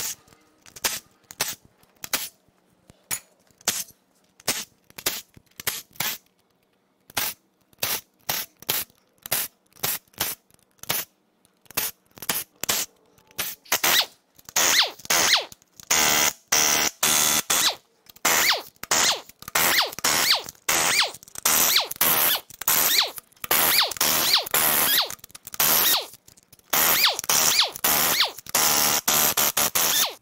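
Power tools backing out the Torx bolts of an engine bedplate in repeated bursts. For the first half a cordless driver runs in short, fairly quiet bursts about once a second. From about halfway an air-powered impact wrench takes over in louder, longer bursts close together.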